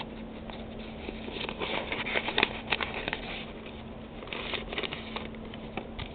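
Paper mailing envelope rustling and crinkling in irregular bursts of short clicks as hands open it and pull out a trading card.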